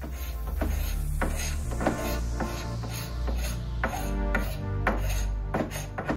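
Carbide paint scraper dragged in short, repeated strokes over painted wood, scraping off old paint, about two strokes a second. Background music with a steady bass runs underneath.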